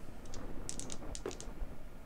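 Two six-sided dice thrown onto a cloth playing mat, giving a quick run of light clicks about a second in as they tumble and knock together.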